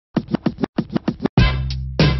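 Intro theme music opening with a quick run of turntable-style scratches, eight short strokes in two groups of four, then a loud bass-heavy chord lands about a second and a half in and holds.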